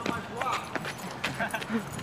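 Footsteps of a person and a dog walking through dry fallen leaves, a run of irregular crunching crackles.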